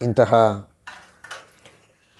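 A man says one word, then about a second of faint, irregular clinks and rustles, like small objects being handled.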